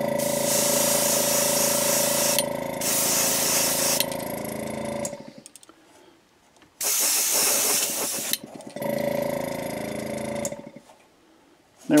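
Small airbrush compressor running with the airbrush spraying paint in short bursts of hiss. It runs for about five seconds, stops briefly, then runs and sprays again until just before the end.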